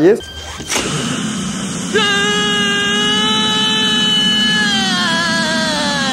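A film clip's soundtrack: a blowtorch rushing, then about two seconds in a man's long, high scream, held steady and falling slightly in pitch near the end, as the torch sets his head on fire.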